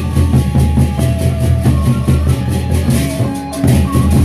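Gendang beleq ensemble playing: large Sasak double-headed barrel drums beat a dense rhythm over crashing hand cymbals and held pitched gong tones.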